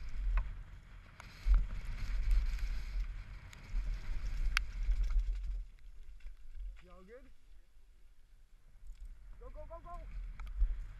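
Wind buffeting a helmet-mounted camera microphone as a downhill mountain bike rolls fast over wet dirt, with sharp clicks and rattles from the bike over bumps; the rumble eases after about five and a half seconds. Brief voice calls come about seven seconds in and again near the end.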